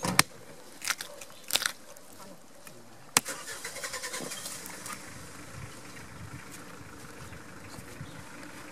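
Butcher's cleaver chopping into a split pig carcass on a wooden bench: several sharp blows over the first three seconds, some in quick pairs. From about three seconds in, a steadier background noise carries on.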